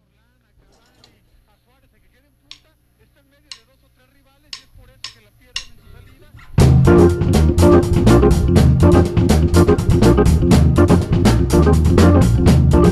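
A few sharp clicks, a second apart and then twice as fast, count the band in; about six and a half seconds in, a funky jazz band comes in loud, with electric bass guitar, drum kit with cymbals and keyboard.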